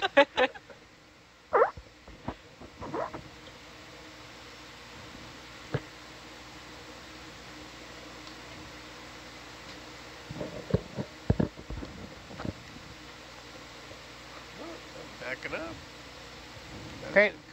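Steady hum of equipment and fans behind an open comms microphone, with a laugh at the very start. A few short knocks and brief murmured voices come through, most of them between about two-thirds and three-quarters of the way in.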